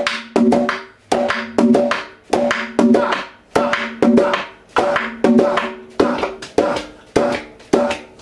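Dominican tambora played with a stick in the right hand and slaps of the bare left hand (the galleta or quemado) on the weak beats, in the merengue 'a caballo' pattern. Sharp, ringing drum strokes in a steady rhythm, a main stroke about every 0.6 s with lighter strokes between.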